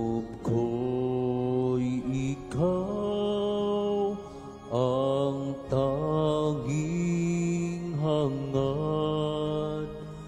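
Slow communion hymn sung with long held notes that slide up into each pitch and short breaths between phrases, over a steady low accompaniment.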